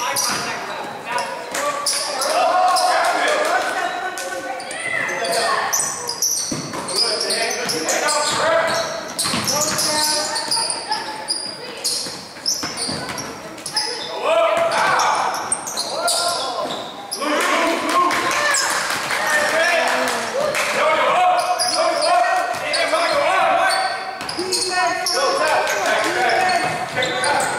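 Live youth basketball game in a gym: the ball bouncing on the hardwood court amid indistinct shouting voices of players and spectators, echoing in the large hall.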